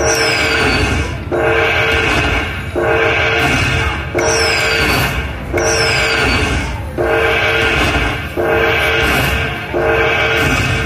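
Silk Road slot machine tallying its bonus coins into the win meter: a repeating held, chord-like jingle, one about every second and a half, each marking another coin's value being added. A few of the jingles open with a short falling whistle.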